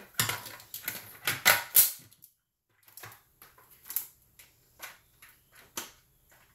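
Hard plastic parts of an ice cream maker knocking and clicking as they are handled and fitted together: a cluster of loud clatters about a second and a half in, then scattered lighter clicks.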